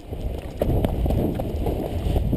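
Two people running in quick footfalls down a grassy slope to launch a tandem paraglider, with wind rumbling on the microphone. The running gets louder about half a second in.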